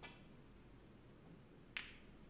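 Snooker cue tip striking the cue ball with a faint click, then near the end a louder, sharp click of the cue ball hitting the pink ball.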